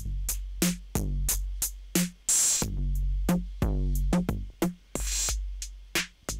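Ableton Live's Kit-Core 808 drum rack playing a simple looping beat through an Overdrive effect, distorted for a harder sound. Long booming 808 kicks and short ticking hits, with a bright hit about every two and a half seconds.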